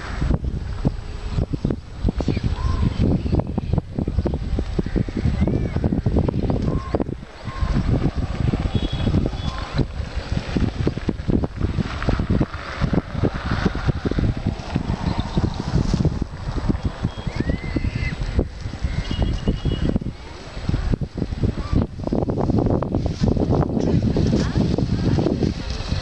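Wind buffeting the microphone in uneven gusts, with a few faint short chirps over it.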